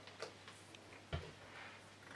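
Faint room tone with a steady low hum and two light knocks, one about a quarter of a second in and a heavier, duller one just after a second in, made by small objects being handled or set down.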